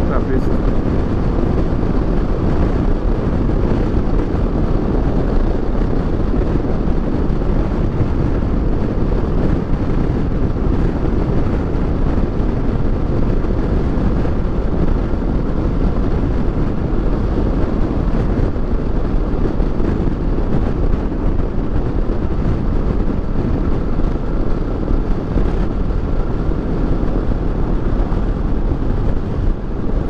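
Steady wind rush on the microphone at highway speed, over the running parallel-twin engine of a Kawasaki Versys 650 motorcycle and its tyres on the road.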